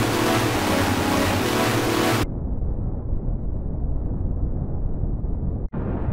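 Heavily effects-distorted sound track: a loud, harsh noise that cuts off abruptly about two seconds in to a muffled low rumble, with a split-second dropout near the end.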